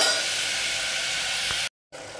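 Vegetables frying in a steel pot on a gas stove: a steady sizzling hiss that cuts off abruptly shortly before the end.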